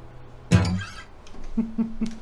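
A man chuckling: one short laugh about half a second in, then three quick soft laughs near the end.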